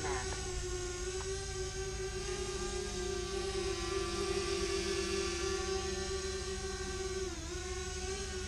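DJI Spark quadcopter's motors and propellers running in flight, a steady hum at one pitch with overtones that dips briefly in pitch near the end.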